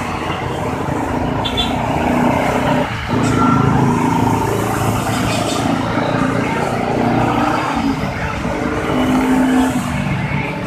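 Busy road traffic: a large coach bus passing close by with its engine running, amid a steady stream of motorcycles and cars.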